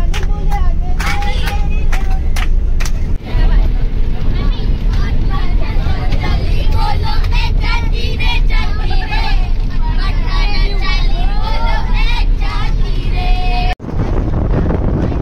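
Children's voices singing and chattering inside a moving bus, with hand claps in the first few seconds, over the steady low rumble of the bus engine and road. The sound cuts off sharply just before the end.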